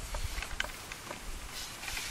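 Quiet outdoor background noise with a low rumble and a few light clicks near the start.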